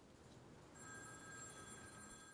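Faint hiss, then under a second in a steady, high-pitched ringing of several tones at once begins and holds.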